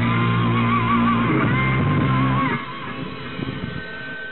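Rock band with electric guitar and bass guitar, the guitar holding a note with a wavering vibrato. The music stops about two and a half seconds in, leaving a faint hiss.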